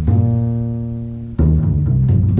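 Upright double bass plucked pizzicato: one low note rings out and slowly fades, then a new note is plucked about one and a half seconds in.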